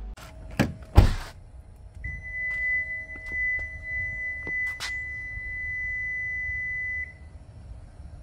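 A car door shuts with a thud about a second in. Then the 2022 Kia EV6 sounds its key-out-of-car warning: one long, steady, high-pitched tone lasting about five seconds, the sign that the door has been closed with the smart key carried outside the car.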